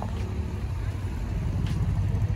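Low, uneven rumble of car engines idling close by.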